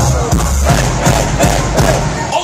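Live hip-hop concert music over a festival PA with a heavy bass beat, heard from within the crowd, with crowd noise mixed in.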